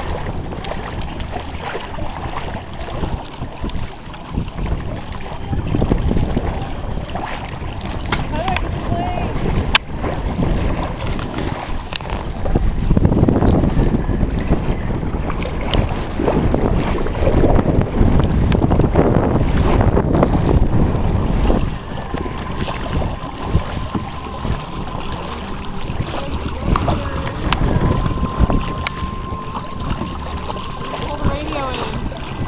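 Wind buffeting the camera microphone, gusting louder for several seconds midway, with water lapping around the inflatable boats and kayak.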